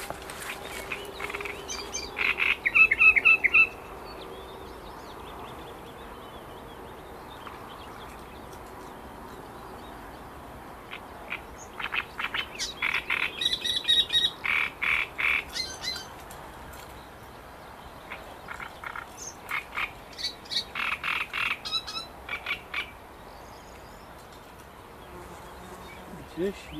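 Frogs croaking in three bouts of rapid, repeated calls: a short bout a couple of seconds in, a longer one in the middle and another toward the end.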